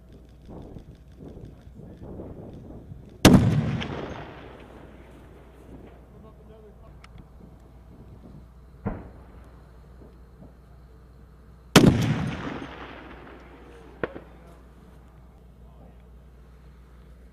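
Two shots from a .50-caliber sniper rifle, about eight and a half seconds apart, each a loud blast with an echoing tail that fades over a second or more. Two much fainter sharp cracks come between and after them.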